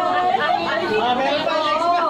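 Several people talking over one another at once: indistinct overlapping chatter.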